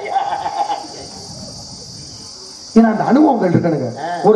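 Steady high-pitched chirring of crickets, heard plainly in a lull between voices on the stage microphones. A loud amplified voice cuts in about three seconds in.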